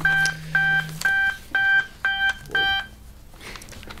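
A phone ringing with an incoming call: a ringtone of six short electronic beeps, about two a second, that stops a little under three seconds in.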